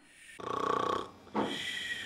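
A person snoring: a rattling snore about half a second in, then a quieter breath out with a thin whistle.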